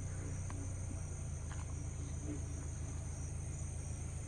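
Steady, high-pitched chorus of night insects such as crickets, over a low, steady hum, with a few faint small knocks.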